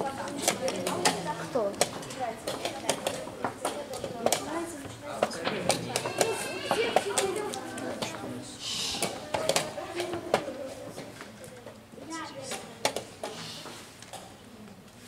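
Wooden chess pieces being set down on boards and chess clock buttons being pressed during blitz games: many sharp, irregular clicks and knocks.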